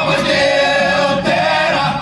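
A group of voices singing together, holding long notes, with a short break near the end.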